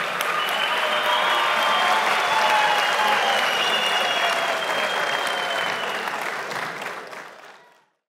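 Applause from a large audience in a hall, steady, then fading away over the last two seconds.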